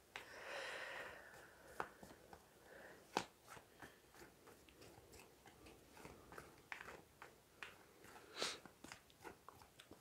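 Tarot cards being shuffled by hand, very faint: a soft rustle of cards about half a second in, then scattered light clicks and taps of the deck, with another brief rustle near the end.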